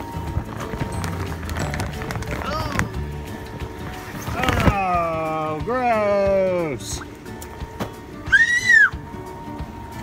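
Background music, with two long drawn-out vocal sounds in the middle and a short, very high-pitched squeal near the end.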